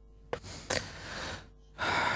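A man breathing audibly between speaking turns: a small click, then a long breathy exhale, and a sharper, louder intake of breath near the end.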